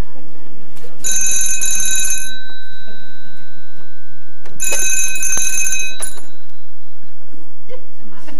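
Telephone bell ringing twice, each ring lasting about a second and a half, about a second in and again about four and a half seconds in, then stopping as the phone is answered.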